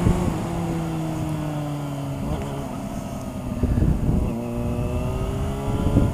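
Motorcycle engine heard from the rider's seat over wind noise, its note easing slowly down in pitch. The engine note fades for a couple of seconds in the middle under gusts of wind noise, then comes back steady.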